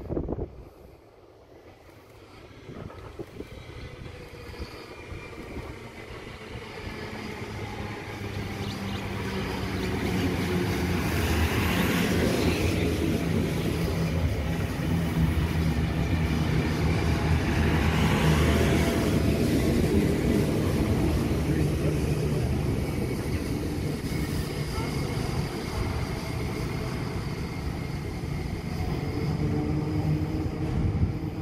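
Vintage red single-deck electric train (the heritage F1 set) approaching and passing close by: a low motor hum and wheel rumble grow louder over the first ten seconds, then hold steady as the carriages go by. The rattle on the rails swells louder twice, about twelve and eighteen seconds in.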